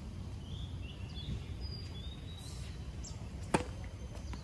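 A tennis ball bounced once on a hard court, a sharp single smack about three and a half seconds in. Birds chirp high and faintly over a steady low outdoor rumble.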